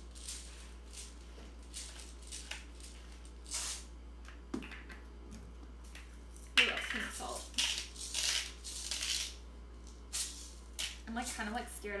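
Hand-twisted spice grinders grinding in short crunching bursts: first a pepper mill, then a pink salt grinder, which grinds louder from about halfway through.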